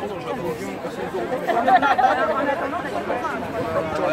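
Crowd chatter: several people talking at once, with no single voice clear.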